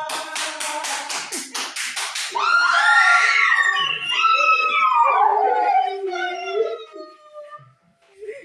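A dog whining and howling excitedly in long, wavering cries, after a rapid run of taps about five a second in the first two seconds.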